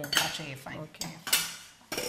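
Metal spoon clinking and scraping against a stainless-steel pot, about three sharp clinks.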